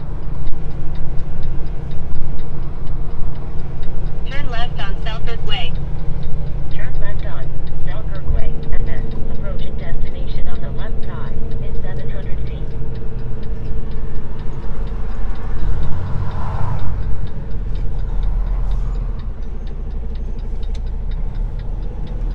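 Semi-truck diesel engine running under way, heard inside the cab as a steady deep drone; it eases off over the last few seconds.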